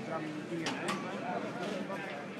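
Background voices of people talking nearby, with two short sharp clicks near the middle.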